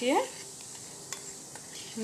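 A spoon stirring vinegar and baking soda in a small bowl, the mixture fizzing softly as they react, with one light tap of the spoon about a second in.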